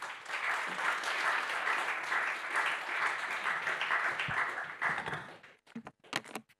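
Audience applauding, holding steady for about five seconds and then dying away.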